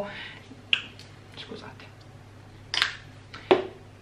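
Hands being rubbed together to massage in hand cream: a few brief soft swishes and a sharp click near the end.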